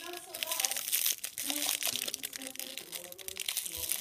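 Toy packaging crinkling and crackling as a child's hands handle it, in quick irregular crackles throughout.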